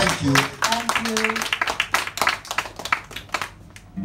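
A small audience applauding by hand, with a few voices calling out near the start; the clapping thins out and fades toward the end.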